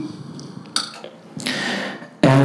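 Improvised non-verbal vocal sounds: scattered low, guttural mouth sounds with a short puff about three-quarters of a second in and a breathy hiss near the end.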